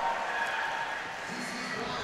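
Steady arena ambience of a roller derby bout: crowd murmur and roller skates on the track, heard as an even hiss, with a faint distant voice joining in after about a second.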